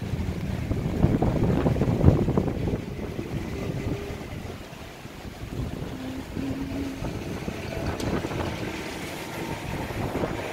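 Wind buffeting a phone microphone, a low rumble loudest in the first three seconds, over faint outdoor background sound.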